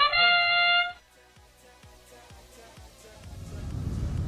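FIRST Robotics Competition field's match-start sound cue: a synthesized brass-like fanfare whose last note is held and cuts off about a second in. After a quiet stretch, a low rumble of arena noise builds near the end.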